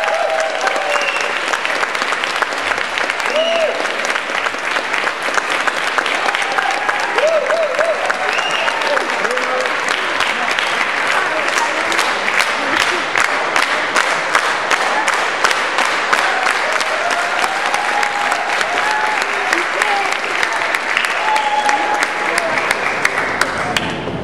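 Audience applauding steadily for about twenty seconds, with scattered cheers and voices calling out over the clapping, stopping quite suddenly at the end.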